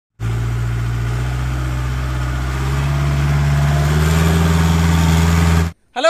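Jeep engine running steadily, its speed rising a little in a couple of steps, then cutting off abruptly near the end.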